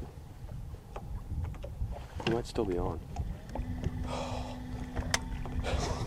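Wind buffeting the microphone on an open boat, a constant low rumble, with a brief voice a couple of seconds in and a steady low hum through the second half.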